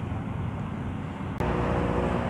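Steady rumble of distant road traffic. About a second and a half in there is a sharp click, and after it the rumble is louder, with a low engine hum in it.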